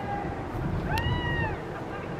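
A single short, high cry about a second in, rising and then falling in pitch, over a steady low rumble.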